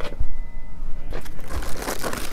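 Clear plastic parts bags and a cardboard shipping box rustling and crinkling as hands dig into the box for the next bagged part. The sound is irregular and gets louder near the end.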